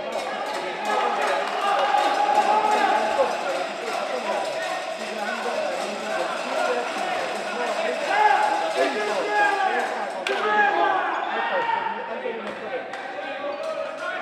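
Handball match sound in a sports hall: players' and spectators' voices calling out, with the ball bouncing on the court and short knocks throughout.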